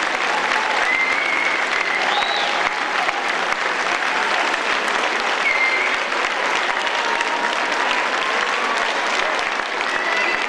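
Audience applauding steadily after a children's dance performance, a dense, even clapping with a few brief high-pitched calls heard above it.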